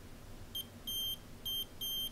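Buzzer of a DIY metal detector kit with coils printed on the circuit board, giving four high-pitched beeps of uneven length. It is sounding because the detector is picking up metal pliers about two centimetres away.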